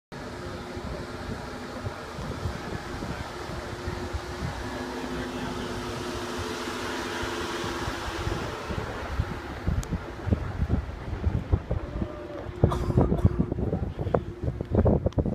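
Steady road and engine hum, with wind buffeting the microphone in uneven gusts from about nine seconds in.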